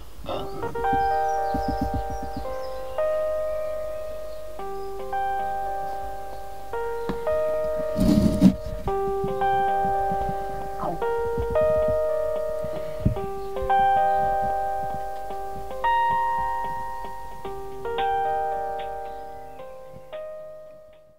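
Telephone hold music heard through a Snom VoIP desk phone on a G.711 call: a slow melody of struck notes that each ring and die away, loud and clear but cut off above about 4 kHz. A brief rustle comes about eight seconds in.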